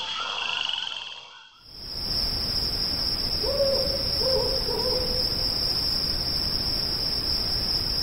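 Night-time ambience sound effect: a steady high insect-like trill over a soft hiss, with three short low animal calls, like croaks, about halfway through. It starts after a brief dip about a second and a half in.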